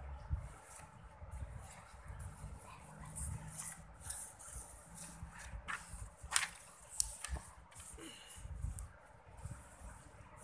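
Pencil writing on paper and worksheet sheets being rustled and slid across a hard tabletop, with two sharp clicks a little past the middle.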